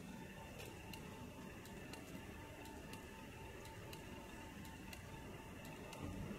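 Faint, regular ticking about twice a second over a low steady background hum.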